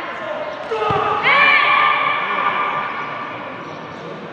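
A single heavy thud of an impact in a pencak silat bout, about a second in, followed by several voices shouting and cheering with rising and falling pitch that fade over the next two seconds, with the echo of a large hall.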